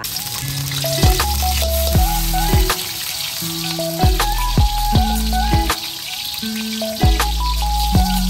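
Sliced garlic frying in hot oil in a wok: a steady sizzle that starts suddenly as the garlic drops in. Background music with a bass line plays throughout.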